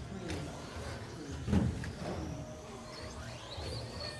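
Electric RC short-course trucks whining as their motors rev and pull away at a race start, in a large echoing hall, with one heavy thump about one and a half seconds in.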